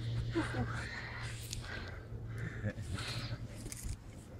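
Faint, indistinct voices over a steady low hum.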